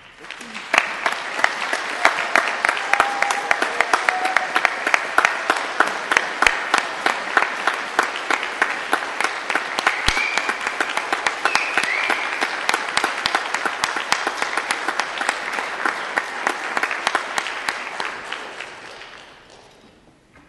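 Audience applauding, starting about a second in and holding steady for most of its length, then fading away near the end.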